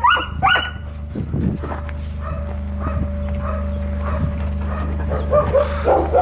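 Dogs barking and yipping: two sharp barks right at the start, fainter yips through the middle, and a quick run of barks near the end.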